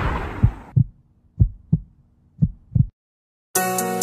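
Heartbeat sound effect: three double thumps about a second apart over a faint hum. It stops dead, and after a short silence an R&B song starts near the end.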